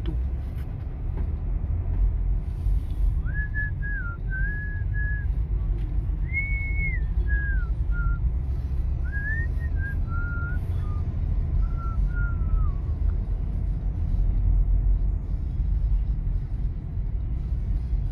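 A person whistling a short, wandering tune for several seconds, over the steady low rumble of a car's engine and tyres heard from inside the cabin while driving.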